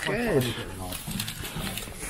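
A short burst of speech, then low, indistinct voice sounds over rustling and handling noise as a handheld camera is pushed through undergrowth.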